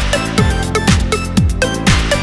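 Electronic dance music with a steady kick drum, about two beats a second, under synth chords and ticking hi-hats.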